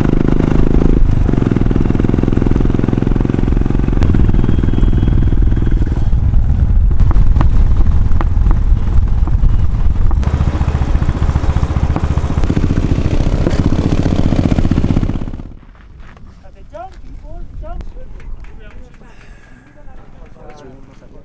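Motorcycle engine running steadily under way, loud. About fifteen seconds in it drops away abruptly, leaving a much quieter stretch with voices.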